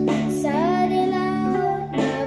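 A boy singing a cover of a pop ballad over a guitar backing track, holding one long note that starts about half a second in with an upward slide.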